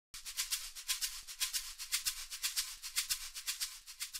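Rhythmic shaker percussion in a short intro sting: a thin, bright rattle of about four strokes a second, fading a little toward the end.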